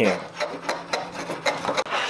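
Shop-made wooden router plane shaving end-grain waste from a tenon cheek, a series of short, irregular scraping cuts as the blade takes the wood down to final depth.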